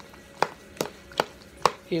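Metal spoon chopping into tuna salad and knocking against the bowl, four sharp knocks about every half second.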